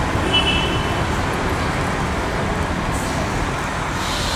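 Street traffic noise: a steady low rumble of passing vehicles, with a brief high squeal about half a second in.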